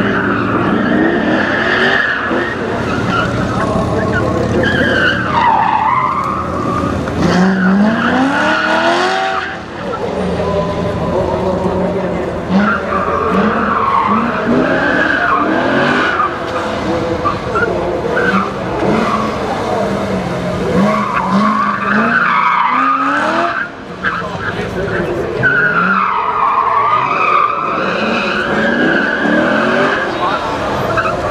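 Chevrolet C6 Corvette's V8 revving up and falling back again and again as it is driven hard through an autocross course, with tires squealing through the turns several times.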